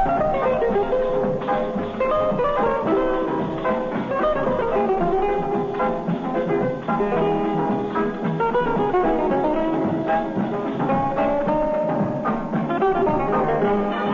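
A radio studio orchestra playing an instrumental number, with a melody that moves steadily up and down.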